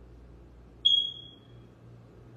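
A single high-pitched electronic beep that starts sharply about a second in and fades over most of a second.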